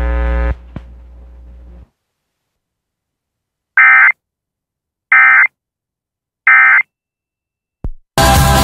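Emergency Alert System end-of-message signal: three short bursts of data tones, about 1.3 seconds apart, marking the end of the alert. Before them a steady electrical hum cuts off about half a second in.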